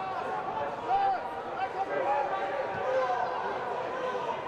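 Distant, overlapping shouts and calls of footballers on the pitch, carrying across an empty stadium with no crowd noise.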